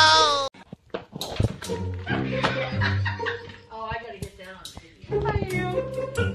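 A person's voice talking, with a little laughter, over background music.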